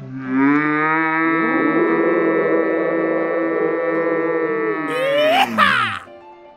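A long, steady held tone with many overtones starts abruptly, then sweeps rapidly upward in pitch near the end and cuts off suddenly.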